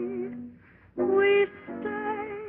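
A woman singing a slow song with vibrato. One phrase dies away shortly after the start, and after a short break a new phrase begins about a second in. The sound is thin and cut off in the highs, as on a 1930s film soundtrack.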